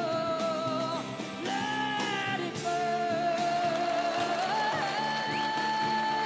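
A female singer performing live with a band, holding long sung notes with vibrato over the accompaniment; the held note steps up in pitch about two-thirds of the way through.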